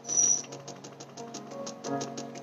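Background music: sustained low notes under a light, even ticking beat of about seven ticks a second, with a brief louder sound just after the start.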